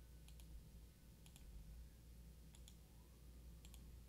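Near silence: a faint low hum with four soft double clicks, one pair about every second.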